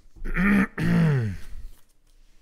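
A man clearing his throat in two voiced pushes, the second longer, with the pitch dropping in each.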